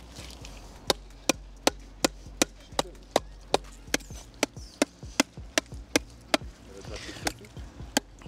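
Quick, regular hammer blows, about two or three a second, on a mud-caked lump of scrap metal, knocking at a piece stuck to it. They stop a little after six seconds, with one last blow about a second later.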